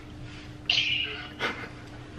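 A person's short, high-pitched squeal of stifled laughter, about half a second long, followed by a brief sharp sound.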